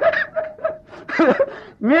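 A man chuckling briefly, in two short bursts of laughter with a pause between.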